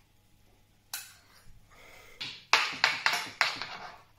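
Metal spoon scraping and knocking against a steel frying pan, gathering up leftover sauce: a sharp click about a second in, then four loud scrapes in quick succession near the end.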